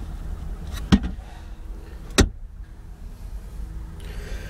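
Two sharp plastic clicks about a second apart, the second louder: the center console lid of a 2011 Jeep Wrangler Unlimited being unlatched and shut, over a low steady rumble.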